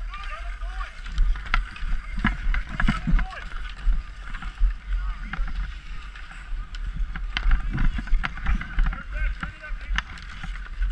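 Ice hockey skates scraping and cutting on outdoor ice in repeated strides, with frequent sharp clacks of sticks and puck, over a steady low rumble on the body-worn camera's microphone. Children's voices shout faintly in the background.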